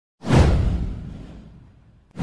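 Intro whoosh sound effect: it starts suddenly with a deep low boom underneath, and its hiss sweeps downward and fades away over about a second and a half.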